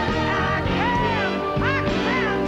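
A woman singing with a live band: short sung phrases that arch up and down in pitch over a steady band accompaniment.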